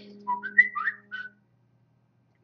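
A man whistling a few short notes that slide up and down, over a low steady hum that stops about two-thirds of a second in.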